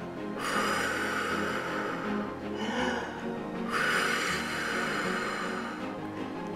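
A person blowing two long breaths, each about two seconds, to cool the pretend hot massage stones, over quiet background music.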